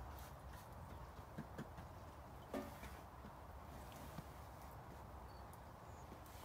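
Faint outdoor ambience: a steady low rumble with a few scattered light taps.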